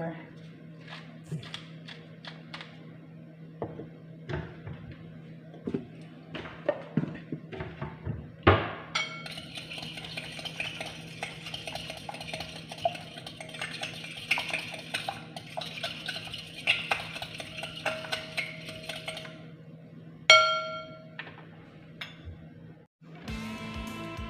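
A metal fork beating eggs in a glass bowl: scattered taps and clinks at first, then about ten seconds of fast, continuous clinking of metal against glass. A single louder ringing clink follows near the end.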